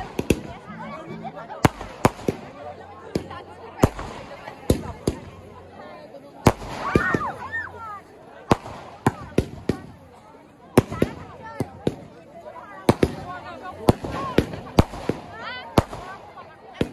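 Aerial fireworks bursting overhead: an irregular string of sharp bangs, several a second at times, with pauses between clusters.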